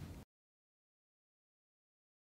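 Near silence: a faint fading tail of sound cuts off about a quarter of a second in, followed by complete digital silence.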